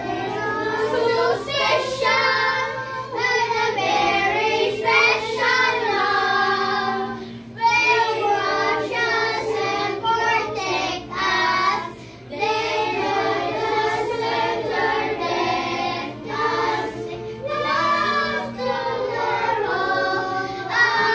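A group of young children singing an action song together, their voices in unison with brief pauses between lines.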